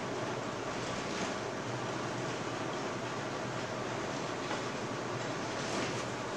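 Steady, even hiss of background noise with no speech, broken only by a few faint brief scratches.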